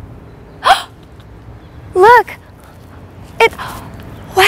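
Three short wordless voice sounds, brief surprised exclamations: one about a second in gliding upward, one about two seconds in rising and falling in pitch, and a quick one near the end.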